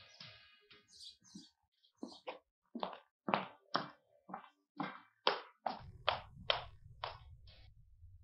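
Quick footsteps of heeled shoes striking paving stones, a brisk walk of about two to three steps a second that grows louder over the first few seconds. A low steady hum comes in near the end.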